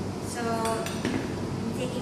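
A few clinks and knocks from a blender jar being lifted and seated onto its base on a stone countertop.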